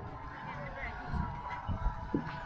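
Faint talk-show voices from an outdoor television, with a few dull low thumps in the second half.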